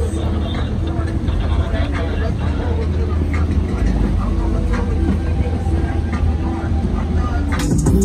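Boat engine running steadily under way, a loud low rumble with a steady hum over it, and voices talking faintly over the engine.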